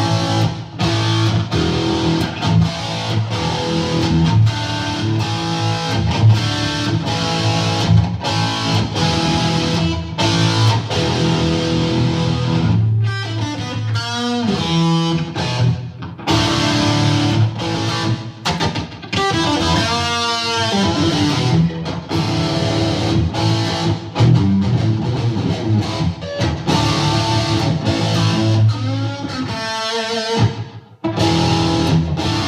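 A 1964 Gibson SG with two P90 pickups, played amplified: steady strummed chords and riffs, with notes wavering and bending in pitch twice in the middle and again near the end.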